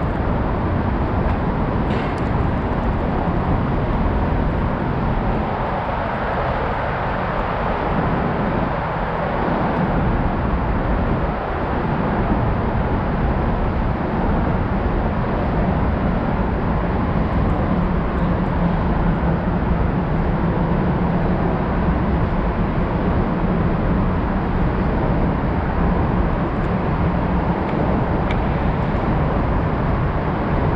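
Steady road traffic noise, an even rumble with a low hum that grows stronger through the middle.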